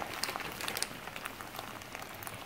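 Food cooking in a pan on the stove: a faint, steady sizzle scattered with small crackles.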